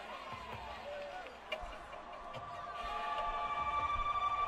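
Live concert audience noise between songs, with scattered shouts. From about halfway through, a steady electric drone fades in and swells louder as the band starts the intro of the next song.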